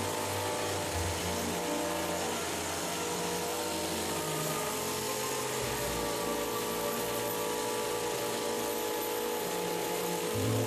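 Electric sheep-shearing handpiece running steadily as it cuts through a sheep's fleece, a continuous mechanical buzz with a steady hum.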